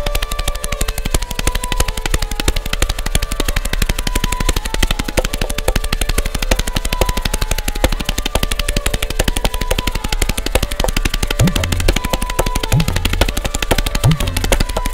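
Tabla played at very fast drut teentaal tempo, a dense unbroken stream of strokes, over a sarangi holding a repeating melody (the lehra). In the last few seconds a few deep bayan strokes bend upward in pitch.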